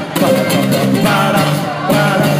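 Live amplified music from a ukulele band with a drum kit, playing continuously with a repeating bass line under a melody.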